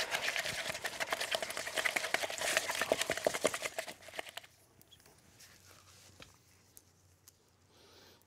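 Dental alginate being stirred briskly in a paper cup: fast, continuous scraping strokes that stop about four and a half seconds in, followed by near silence with a few faint ticks.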